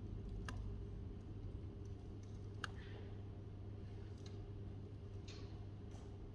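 A few sparse, isolated clicks of laptop keys, the sharpest about half a second and two and a half seconds in, over a steady low room hum.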